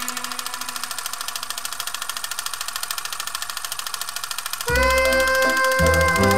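Rapid, even mechanical clatter of film running through a projector, more than a dozen clicks a second. About three-quarters of the way in, it cuts to louder music with sustained notes.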